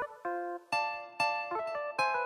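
Tropical dancehall instrumental beat: a plucked-string melody comes in sharply at the start, with notes struck about twice a second.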